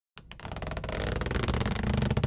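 Intro sound effect for an animated logo: a couple of short clicks, then a rumbling swell that builds steadily in loudness.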